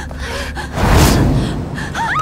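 A sudden loud whoosh of rushing air about a second in, swelling and fading within half a second, over a low background drone.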